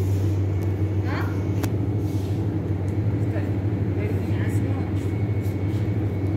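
A steady low hum, with faint voices in the background and a single sharp click about one and a half seconds in.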